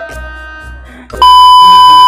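Background music, then about a second in a loud, steady high beep starts abruptly and holds: the test tone of a TV colour-bar test pattern, used as an editing effect.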